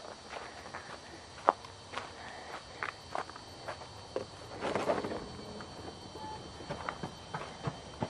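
Footsteps of someone on the move, a string of light, irregular steps and knocks, with a short rustling stretch about five seconds in.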